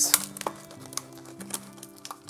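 Crackles and clicks of a hard plastic clamshell package being squeezed and pulled open by hand, over background music with long held notes.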